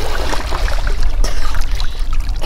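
Water splashing and sloshing around a snorkeler swimming with fins at the surface, over a steady low rumble of wind on the microphone.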